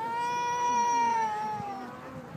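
One long, high-pitched wailing cry, loud and close. It holds its pitch for about a second and a half, then slides down and fades.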